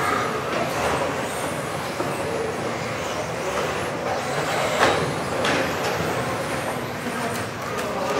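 Radio-controlled 1:10 touring cars racing in a sports hall, their motors making high whines that rise and fall as they accelerate and brake, over a steady reverberant hall din. A couple of sharp knocks come about five seconds in.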